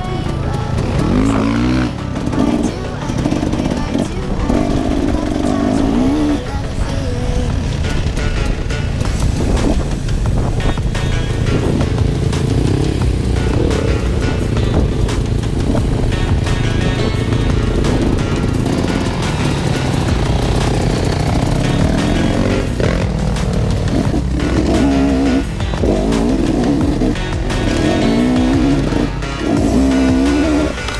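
Enduro dirt bike engines being ridden off-road, their pitch repeatedly rising and falling with throttle and gear changes, mixed with background music.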